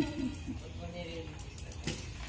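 Soft, indistinct voices of people close by, with one sharp click near the end.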